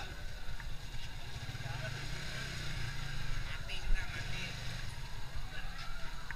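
An engine running steadily with a low rumble, with faint voices in the background.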